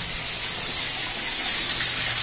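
Bathtub tap running steadily, a stream of water splashing onto the bottom of the tub and into the drain.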